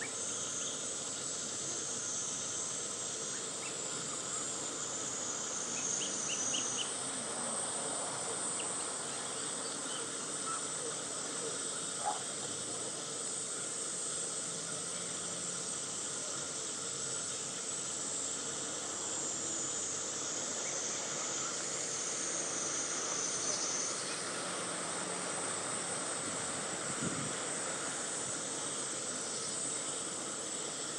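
Steady outdoor background hiss with a high insect buzz that swells in the first few seconds and again about three quarters of the way through, and a single short click around the middle.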